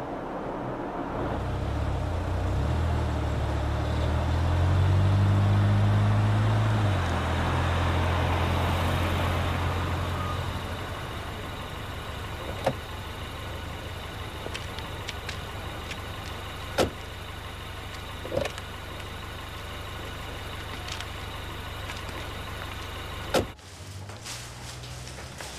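A car engine running at low speed as the car comes along the street, its note stepping up and loudest about five seconds in, then settling to a lower steady hum. Later there are a few sharp clicks, with a louder click just before the end.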